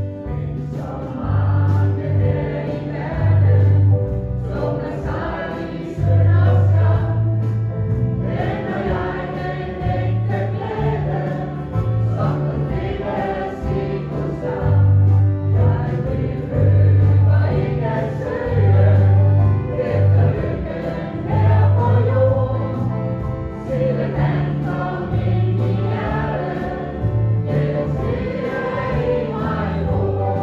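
Choir singing a gospel hymn over a strong, steadily moving bass line.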